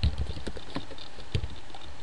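A few separate computer keyboard key clicks, spaced irregularly, from typing at the end of a line of text.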